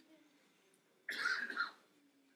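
A single faint cough from a person in the room, about a second in, lasting about half a second.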